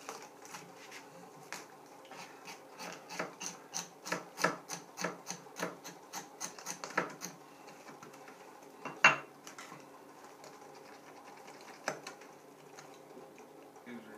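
Knives scraping fish on a wooden tabletop: quick repeated rasping strokes, two or three a second, for most of the first half, then only a few scattered scrapes. A single sharp knock about nine seconds in is the loudest sound.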